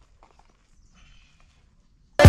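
Near silence, with a few faint clicks and taps from hands working on a mountain bike wheel.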